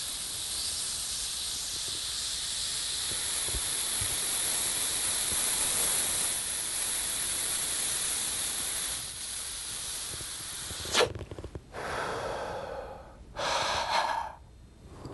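A man drawing a long, hard breath in through his clenched fist, an airy hiss lasting about ten seconds: an inhale against resistance meant to work the diaphragm. Near the end come a short burst of air, then a quicker exhale and a fast inhale.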